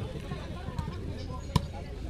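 One sharp smack of a volleyball being struck by a hand during a rally, about one and a half seconds in, over a background of crowd voices.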